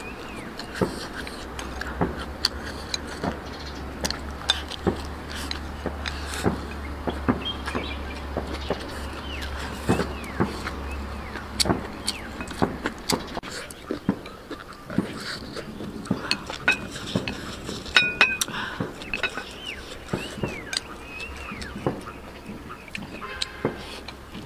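Close-up eating sounds: chopsticks clicking against a porcelain rice bowl, with chewing of rice and chicken giblets. A low steady hum runs through the first half and stops about midway. Faint chirps sound now and then.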